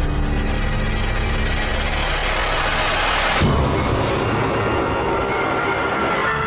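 Dramatic background score: a noisy swell builds for about three seconds and breaks off with a low hit about halfway through, then the music carries on.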